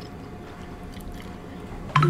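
Close-miked chewing of fried fish with the mouth closed: soft, quiet mouth sounds and a few faint clicks, ending in one sharp lip smack.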